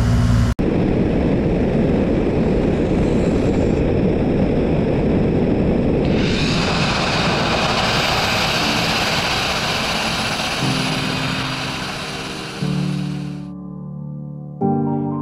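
Abrasive grit-blasting nozzle running against a steel boat hull: a steady rushing hiss of compressed air and grit that turns brighter about six seconds in and cuts off just before the end. Music fades in under it and takes over near the end.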